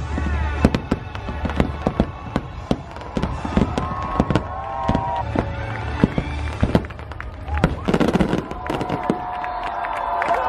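Aerial fireworks bursting in rapid succession: a dense run of sharp cracks and bangs over a low rumble, with crowd voices underneath. Show music cuts off just as the barrage begins.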